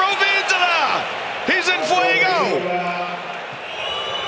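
A man's voice calling out excitedly in two long, sliding shouts with no clear words, the second ending on a held note, over steady arena crowd noise.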